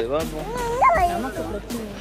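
A young child's high-pitched voice, wavering up and down in pitch and rising to a high point a little before a second in.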